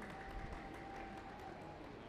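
Faint room tone: a low, even background hiss with a thin steady tone that stops shortly before the end.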